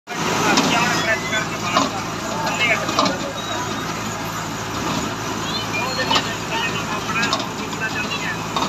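Clay brick-making machine running: a steady engine hum, with several sharp knocks at irregular intervals.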